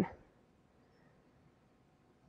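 A woman's voice trails off at the very start, then near silence: only faint outdoor background hiss.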